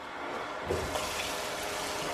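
Kitchen faucet running into a stainless steel sink while hands are washed under it; the flow grows fuller under a second in and then runs steadily.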